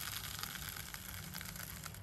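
Granular potting mix pouring off a metal scoop into a small plastic pot, a steady patter of many small grains rattling against the scoop and the pot.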